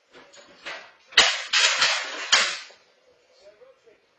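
A sudden sharp crack about a second in, followed by about a second of loud clattering as an object falls to the floor.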